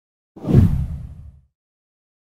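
A whoosh sound effect with a deep low end. It starts about a third of a second in, swells quickly and fades out by about a second and a half.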